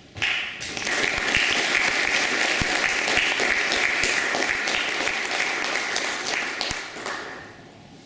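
An audience applauding in a hall. The clapping begins right away, holds steady, and dies away about a second before the end.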